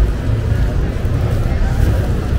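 Loud, uneven low rumble.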